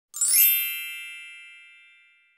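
A single bright electronic chime: a quick upward shimmer at the start that settles into a ringing tone, fading away over about two seconds. It is the sound effect of an opening logo sting.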